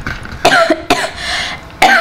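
A woman coughing, a few short coughs with the loudest near the end.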